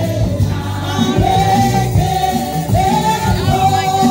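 Gospel choir and praise singers singing a praise song with instrumental backing and a steady beat.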